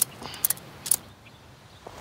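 Faint rustling and a few short clicks of a rope being knotted by hand.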